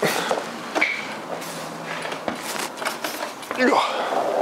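Rustling and handling noise with a few light knocks and clicks, and a brief bit of voice near the end.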